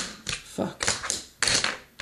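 Wooden Berlinwood fingerboard deck being popped, flipped and landed on a tabletop: a quick, uneven series of sharp clacks as the board's tail and wheels hit the table.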